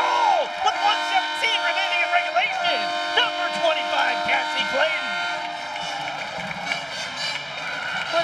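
Arena goal horn sounding one long steady note over a crowd cheering and shouting after a goal. The horn cuts off about five and a half seconds in, and the cheering carries on.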